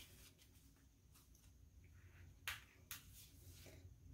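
Near silence, with a few faint, short paper rustles and soft taps as greeting cards are slid off a cutting mat, the two clearest about two and a half and three seconds in.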